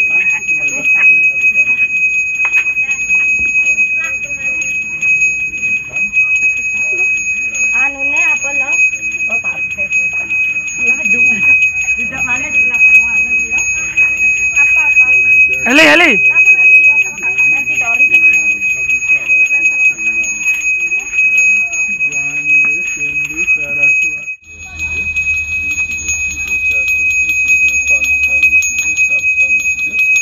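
A Balinese priest's brass hand bell (genta) rung without pause, a steady high ringing, with people talking around it. A brief loud sound cuts in about halfway.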